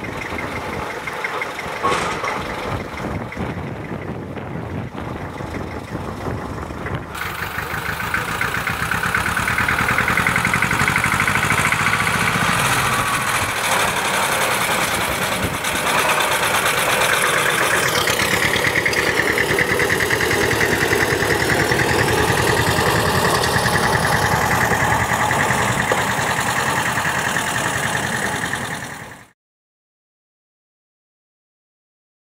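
Small Diema narrow-gauge diesel locomotive's engine running as the locomotive hauls a coach past at close range, growing louder from about eight seconds in; the sound cuts off abruptly just before the end.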